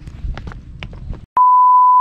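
Footsteps crunching on a dry dirt path, then the sound cuts out and a loud, steady electronic beep at about 1 kHz sounds for about two-thirds of a second near the end.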